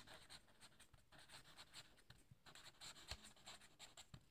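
Felt-tip marker writing a word on paper: faint, quick scratchy strokes as the letters are drawn.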